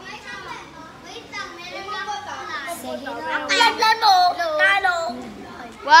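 Many children's voices talking and calling out over one another, getting louder from about three seconds in.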